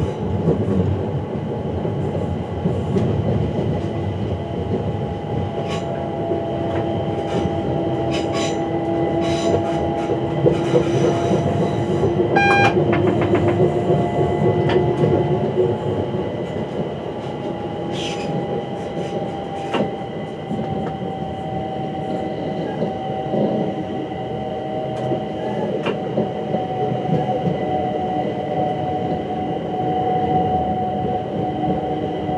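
London Overground electric multiple unit running over curved track and pointwork, heard from the driver's cab: steady running noise with long, slowly falling whining tones and scattered clicks of the wheels over rail joints and points. A brief beep sounds about twelve seconds in.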